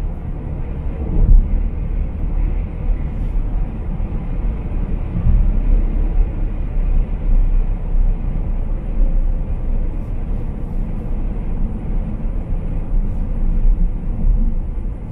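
Steady low road and tyre rumble heard from inside a moving car's cabin, swelling and easing slightly as the car drives on.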